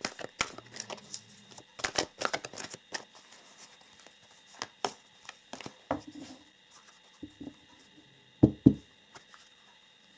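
A deck of oracle cards being shuffled by hand: irregular soft clicks and rustles of cards sliding, with two louder thumps about eight and a half seconds in.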